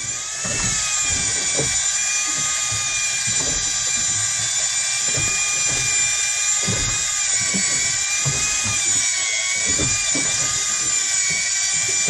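Electric fishing reel's motor whining steadily as it winches in line against a hooked fish, its pitch dipping slightly now and then under the strain.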